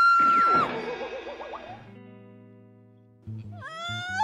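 A woman's loud, high-pitched wail of mock crying, held for about half a second and then dropping away, over background music. She starts wailing and whimpering again near the end.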